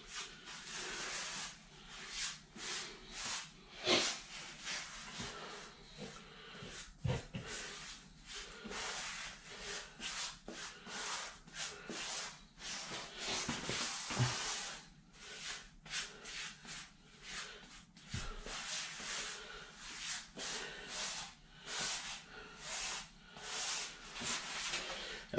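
A rubber grout float sweeping thick pre-mixed grout across hexagon floor tile, in a run of short, uneven scraping strokes about one or two a second.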